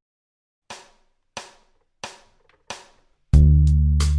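A play-along track counts in with four evenly spaced clicks, about 0.65 s apart. Near the end the drums and an electric bass come in together loudly, the bass holding a low note.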